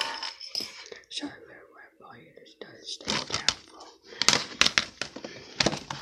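Plastic DVD cases being handled and shuffled on a table: scattered clicks and rubbing, busiest in the second half.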